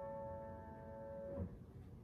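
Grand piano's final chord held and ringing. About one and a half seconds in it is released and cut off with a short soft thump, leaving faint room noise.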